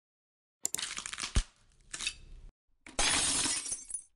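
Glass-shattering sound effects on an animated outro: a first burst of breaking glass with a sharp crack in it, then a louder shatter about three seconds in.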